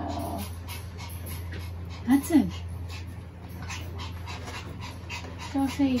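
A small dog panting in quick, even breaths, with a short whine about two seconds in, over a steady low hum.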